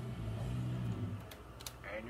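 A few sharp clicks of buttons being pressed on a broadcast video production switcher, over a steady low hum and faint muffled talk.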